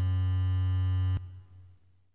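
Held final chord of an electronic outro jingle, with a strong bass note. It cuts off sharply a little over a second in, leaving a faint tail that fades away.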